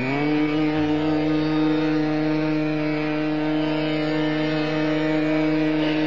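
Male Hindustani classical vocalist sliding up into one long sung note and holding it steady, over a tanpura drone and harmonium accompaniment.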